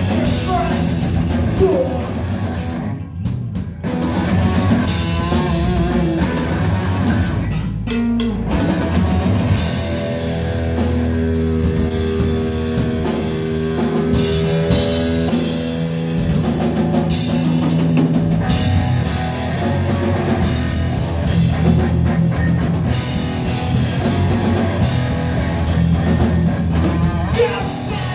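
Loud live rock band playing: drum kit, distorted electric guitar and a vocalist on a microphone, with a couple of brief breaks in the playing in the first eight seconds.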